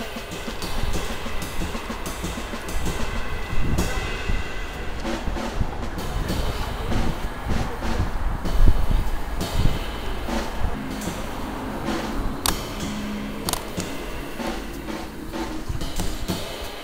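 Background music played on a drum kit, with snare and bass drum strikes.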